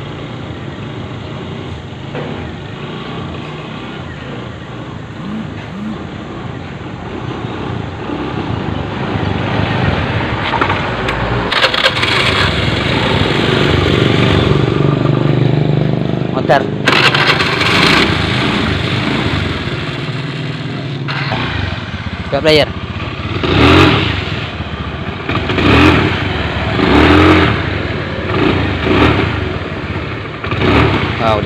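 Fuel-injected Honda Beat scooter's small single-cylinder engine running on a test ride, growing louder about ten seconds in as it comes close, then going in uneven louder bursts in the second half. The scooter stutters when throttled, which the mechanic puts down to the ignition cutting out.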